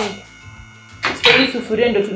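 A short knock, then a lull, then a voice over background music about a second in.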